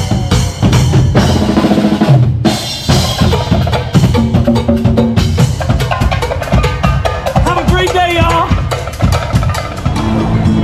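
A percussion troupe drumming on a passing river boat: a fast, steady beat of bass-drum and snare-like hits that runs on without a break, with pitched voices or instruments over it.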